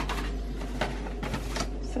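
Paper sachets and a card tray from a baking kit being taken out of their box and set down on a kitchen worktop: a few short paper rustles and light taps.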